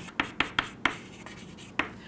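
Chalk writing on a chalkboard: a few sharp taps and short strokes in the first second, then quieter, with one more tap near the end.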